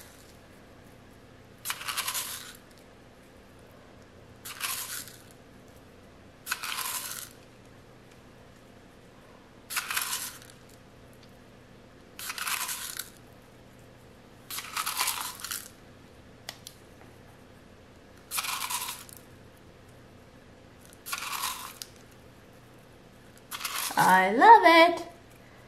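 Coloured salt crystals being pinched from a small cup and sprinkled by hand onto soap batter: eight short rustles of grains, one every two to three seconds.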